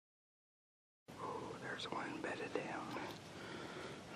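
Hushed whispering from a person, starting about a second in after silence.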